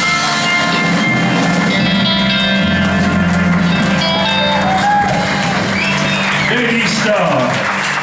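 Live band music with held notes over a steady bass for the first few seconds, then voices and applause in the second half.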